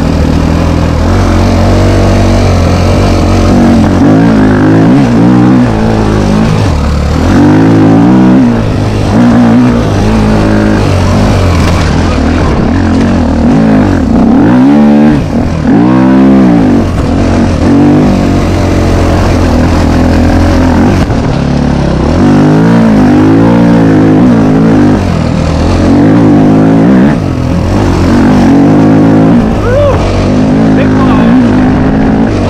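KTM dirt bike engine under way on a trail, revving up and down over and over as the throttle is worked, with a deep drop and climb back up about halfway through. Loud and close to the microphone.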